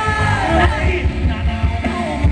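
Loud live ramwong dance-band music: a vocalist singing over electric bass and a steady drum beat.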